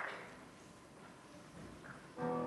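Hushed concert hall: faint room noise, with a short noise at the very start fading within half a second.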